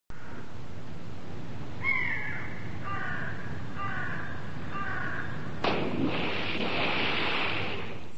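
Outdoor ambience with a bird calling four times: one falling call, then three shorter calls about a second apart. Near the end a sudden hiss of noise starts and runs for about two seconds.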